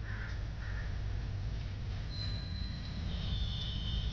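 Crows cawing: two short caws just after the start, then longer, higher-pitched bird calls from about halfway on, over a steady low outdoor rumble.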